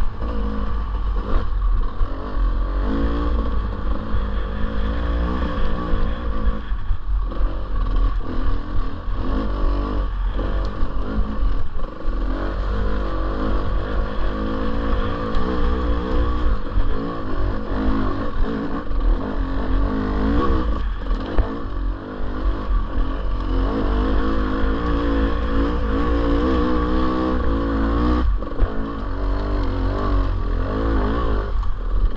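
Dirt bike engine revving up and down as it is ridden over a rough trail, its pitch rising and falling with constant throttle changes. There are brief drops where the throttle is closed, and a steady low rumble runs underneath.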